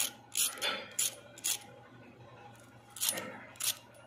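Crisp deep-fried potato fritter (aloo nashta) crunching and crackling as a fork works into it: a quick run of sharp crunches in the first second and a half, then a couple more near the end. The crisp sound is the sign that the fritter is fried golden and crunchy right through.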